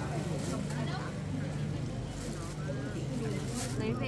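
Indistinct voices of people talking, over a steady low hum like an engine running.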